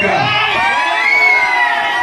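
A crowd of many voices cheering and shouting together, lots of overlapping high calls at once.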